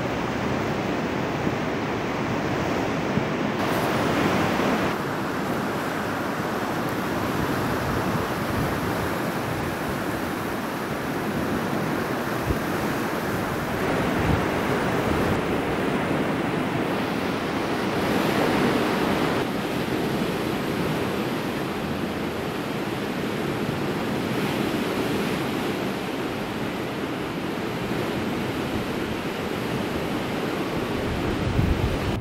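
Sea water rushing and churning past the concrete piers of a storm surge barrier, with wind on the microphone; the noise swells briefly twice.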